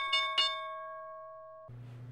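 A bell-like chime struck in a quick run, about four strikes a second, then ringing out and fading before it cuts off suddenly near the end, leaving a faint hum and hiss.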